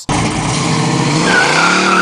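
Car engine revved hard in a burnout, its note climbing, with the tyres squealing as they spin; a high squeal rises out of the noise about a second and a half in.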